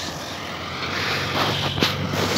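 Zetor Major CL 80 tractor's diesel engine running steadily under load as it pulls a seed drill across a dry field, a low, even hum over a wash of noise.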